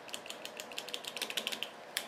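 A quick run of small, light plastic clicks, about ten a second, from a wireless doorbell's push-button unit being handled and pressed. The clicks stop about a second and a half in, and one sharper click follows at the end.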